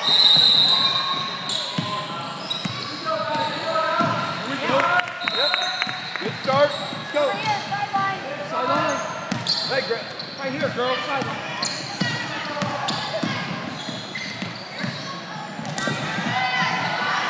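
Youth basketball game in a gym: the ball bouncing on the hardwood floor with sharp thuds, players and spectators calling out, and brief high squeals, all echoing in the large hall.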